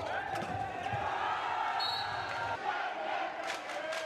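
Live court sound of a handball match in an indoor hall: players shouting across the court, and a few sharp ball impacts in the second half.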